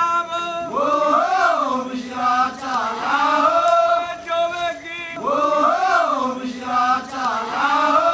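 Chanted singing: a melodic vocal phrase that rises and falls, repeated about every four to five seconds.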